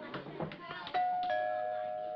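A doorbell chime rings about a second in, two notes, the second lower, both left ringing and slowly fading. It signals someone at the door.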